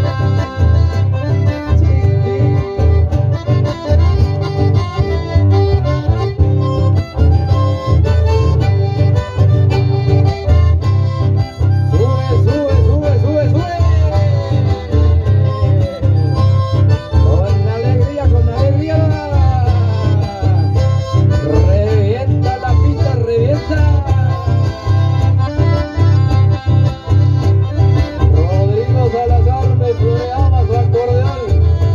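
Accordion and amplified acoustic guitar playing an instrumental passage live. The accordion carries running melodic lines over a steady, bass-heavy accompaniment.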